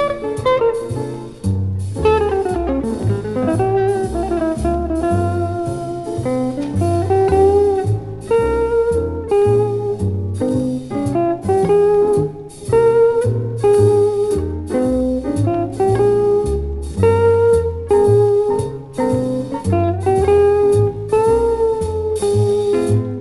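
Small-group jazz recording from 1953 playing a slow blues: electric guitar over a band with a stepping double-bass line, piano and drums, in mono with a narrow sound.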